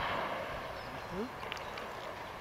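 Open woodland ambience on a driven game shoot: the echo of a shotgun shot fades at the start, then faint short cracks of distant shots follow about a second and a half in.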